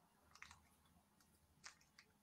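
Near silence: faint room tone with two tiny clicks, one about half a second in and one near the end.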